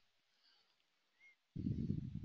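Near silence, then about a second and a half in a short, low, muffled voice sound, like a closed-mouth hum or grunt.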